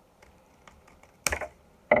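Scissors with titanium-coated blades snipping through a thick fold of paper: a few faint clicks, then one louder, sharp cut about a second and a quarter in.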